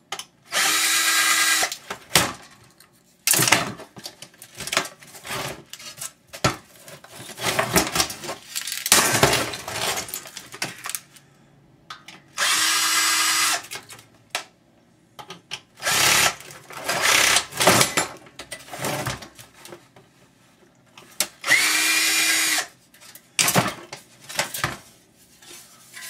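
A power drill run in three short bursts of about a second each, several seconds apart, driving out screws from the monitor's metal and plastic parts. Between the runs come irregular clicks and knocks of parts and screws being handled.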